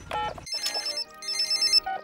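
A mobile phone keypad beep as the last digit is dialled, then the called mobile phone ringing: two short bursts of a high electronic trilling ringtone.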